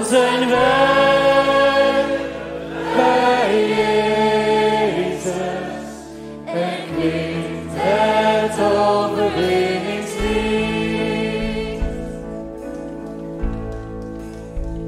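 Live worship music: a mixed group of male and female singers sings a Dutch worship song in harmony over keyboard and band. After about ten seconds the singing gives way to held chords with a low bass.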